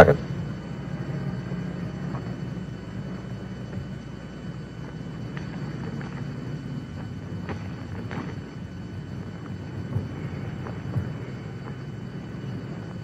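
Low steady hum with a few faint, scattered clicks and taps in the second half: the contents of a man's pockets being set down one by one on a car seat.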